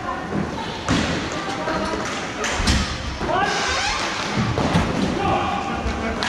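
Hockey game play in a large hall: sharp knocks of sticks and puck against the floor and boards, about a second in and again midway, with players calling out over the echoing hall noise.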